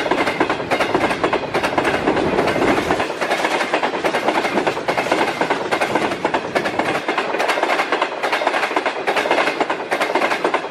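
Passenger coaches of an express train passing close by at speed: a steady loud rush of wheels on rail with rapid clickety-clack as the wheels cross the rail joints.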